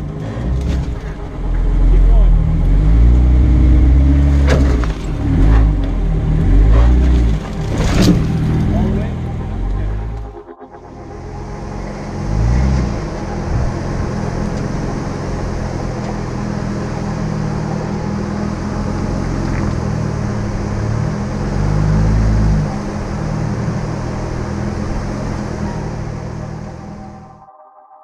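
Jeep Wrangler crawling over rock: close engine rumble with several sharp scrapes and knocks in the first ten seconds, as juniper branches brush the body. After a sudden cut about ten seconds in, a steadier, more distant engine drone with a steady hiss over it.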